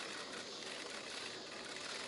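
Faint, steady outdoor background hiss with no distinct event.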